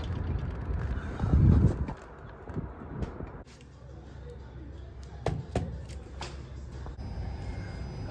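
Low rumbling noise for the first three seconds, then a quieter stretch with a few short sharp clicks from buttons being pressed on a Daikin wired wall remote controller.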